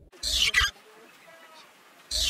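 Rabbit sound effect: one short, hissy burst of about half a second, about a quarter second in, then only faint sound.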